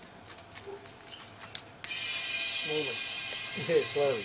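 Compressed air hissing into an aluminium resin-casting pressure pot through its hose, starting suddenly about two seconds in and continuing steadily as the pot is pressurised. Before it come a few faint clicks from handling the valve and fittings.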